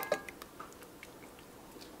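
Faint soft clicks and wet squishing of a thick creamy sauce being scraped out of a glass measuring cup onto cooked egg noodles in a steel pot.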